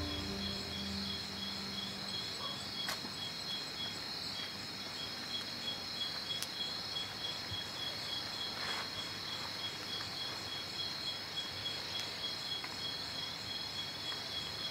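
Crickets chirping steadily as night ambience, a continuous high pulsing trill, with a few faint soft ticks. The last of a low music note fades out in the first second.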